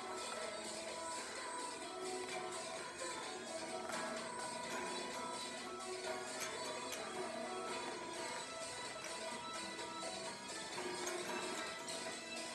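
A recorded song playing steadily through a speaker, with guitar in the mix.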